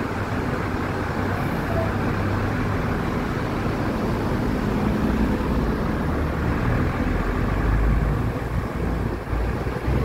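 Street traffic noise: a steady roar of road vehicles, with a deeper low rumble swelling about seven to eight seconds in.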